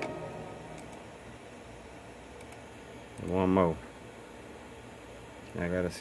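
Low room hiss as the last of the beat fades out, with a man's short voiced sound about three seconds in and his speech starting near the end.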